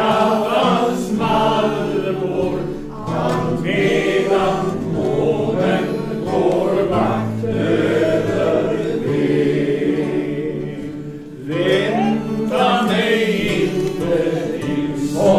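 A small group of mostly male voices singing a song together, accompanied by acoustic guitars, with a short break between lines about eleven seconds in.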